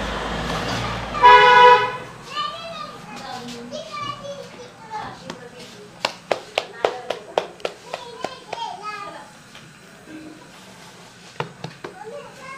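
A vehicle horn honks once, a steady blast lasting under a second, about a second in. Later a run of quick soft slaps, about three a second, comes from hands patting and stretching puran poli dough over the palm, and two more slaps come near the end.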